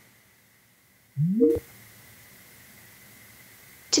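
Microsoft Teams test call connecting: a short rising tone about a second in, ending in a click, followed by a faint steady hiss as the call audio opens.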